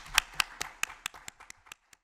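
Applause: hands clapping about five times a second, growing fainter and stopping just before the end.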